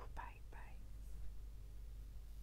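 A woman's breathy, half-whispered "coo" in the first second, fading into a steady low room hum.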